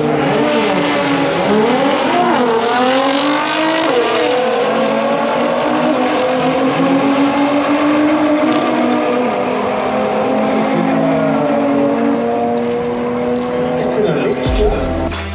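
Two cars launching side by side off a drag strip start line. Their engines rev up and drop back through several gear changes in the first few seconds, then hold a steadier note as the cars run down the track.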